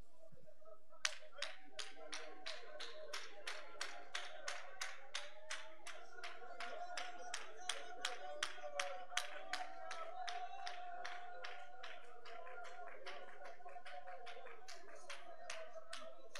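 Hands clapping in a steady rhythm, about two to three claps a second, over a faint sustained tone; the claps thin out in the last few seconds.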